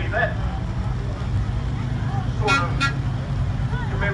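Vintage truck's engine running steadily as it drives slowly past. A little past halfway come two short horn toots, about a third of a second apart.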